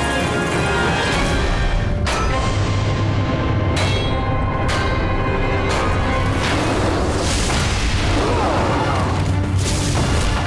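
Dramatic film score over a steady low rumble, punctuated by several heavy booms about a second apart.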